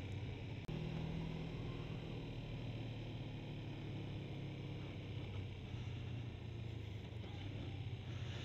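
A 1997 Kawasaki ZZR250's 248 cc parallel-twin engine running steadily while the motorcycle cruises along a street, heard fairly quietly with wind and road noise.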